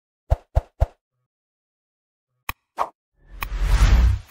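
Sound effects of a like-and-subscribe button animation: three quick pops in the first second, a sharp click and another pop about halfway through, then a whoosh with a low rumble swelling over the last second.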